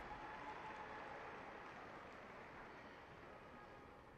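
Near silence: a faint, steady background hiss that fades slowly.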